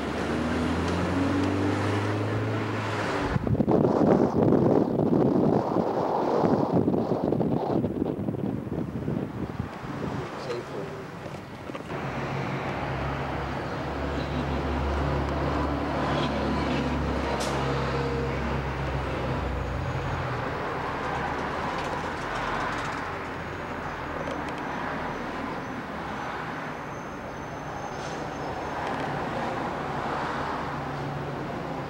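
Street traffic and vehicle engine noise, with a loud, rough rush of noise from about three to ten seconds in.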